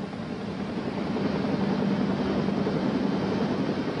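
Motorboat outboard engine running with a steady drone under a rushing noise of wind and sea, growing slightly louder.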